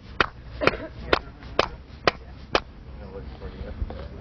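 Hammer blows on a metal rammer, packing black powder and titanium composition into a rocket tube: six evenly spaced strikes about two a second, stopping about two and a half seconds in.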